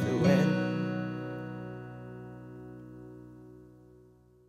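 Final chord of a folk song, strummed on acoustic guitar, ringing out and slowly fading away. The last sung note ends about half a second in.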